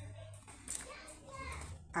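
Faint voices in the background, children among them, talking and playing.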